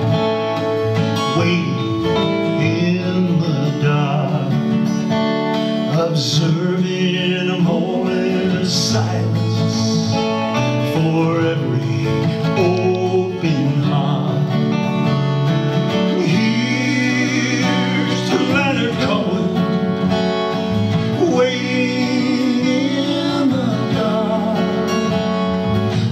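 Instrumental guitar break: an electric hollow-body guitar plays a lead line with bending, gliding notes over a strummed acoustic guitar.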